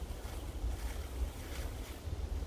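Wind buffeting the phone's microphone outdoors: an uneven low rumble under a faint hiss.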